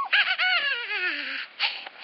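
Playful monkey-imitation calls: a quick run of short hoots that fall step by step in pitch, ending with a brief breathy burst.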